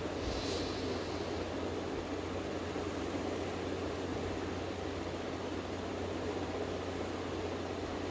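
Steady room noise from ceiling fans running: an even hiss over a low hum, with a brief soft hiss about half a second in.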